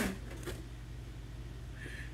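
Quiet room tone with a steady low hum and a single faint tap about half a second in.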